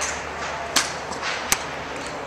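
A golf iron swung and striking a ball off a driving-range mat: one sharp click about a second and a half in, with a fainter swish a little before it.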